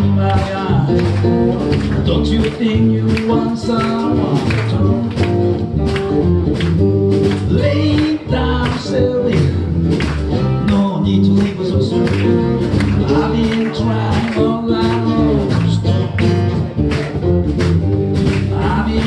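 Live blues band playing: acoustic guitar, electric bass and a drum kit over a steady beat, with a man singing.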